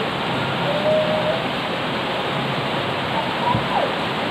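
Heavy rain falling steadily on a paved yard and garden plants, a dense even hiss with no let-up.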